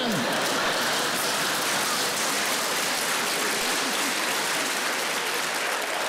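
Studio audience applauding steadily after a punchline, a dense even clapping that holds at one level until the comedian speaks again.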